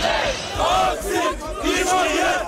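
A crowd of street protesters chanting and shouting, many voices overlapping at once.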